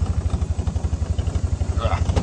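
Side-by-side utility vehicle's engine idling with a steady, low, rapid pulse.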